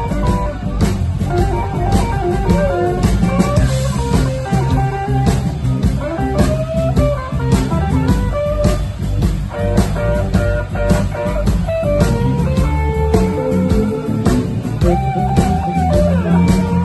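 Live electric blues guitar on a 1970 Gibson ES-355TD-SV semi-hollow electric guitar, playing single-note lead lines with string bends over bass guitar and a rhythm section.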